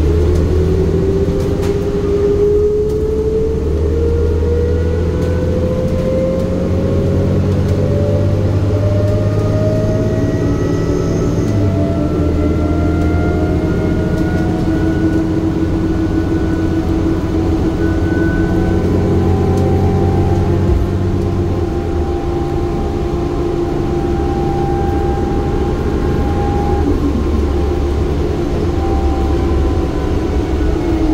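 Interior of a 2008 New Flyer C40LFR city bus under way: the engine and drivetrain running with a whine that climbs slowly in pitch as the bus gathers speed, and the low engine note changing twice along the way.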